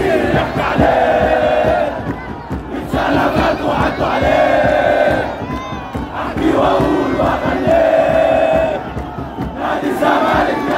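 A large crowd of football supporters chanting in unison: three long sung phrases, each followed by a brief dip before the next.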